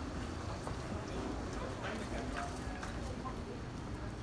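Footsteps knocking irregularly on stone paving, over the talk of passers-by in a busy street.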